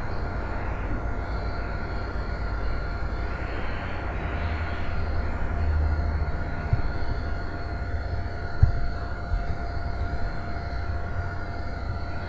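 Steady low rumble and hiss of background noise with faint steady whining tones, broken by a few soft knocks about two-thirds of the way through.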